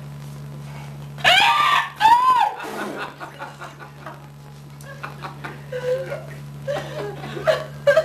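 A man lets out two loud, high-pitched yelling cries, one after the other, about a second and two seconds in. Short bursts of laughter follow, over a steady low hum in the recording.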